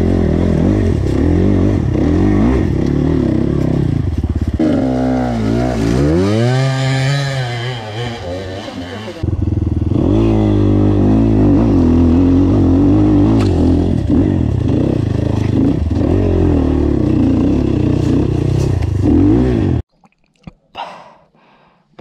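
ZUUM CR300NC enduro motorcycle engine heard from on board, revving and labouring up and down under load on a steep off-road climb. It makes a long rise and fall in revs a few seconds in, and has a sudden break near the middle. The engine stops abruptly near the end, leaving it almost quiet.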